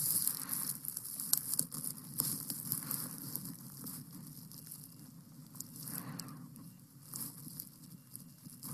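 Crackling rustle of a shirt sleeve and arm rubbing close against a wired headset microphone, with many irregular clicks, loudest at the start.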